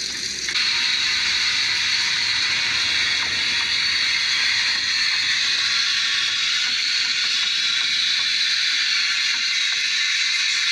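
Water spraying under pressure: a steady hiss that starts about half a second in and holds an even level.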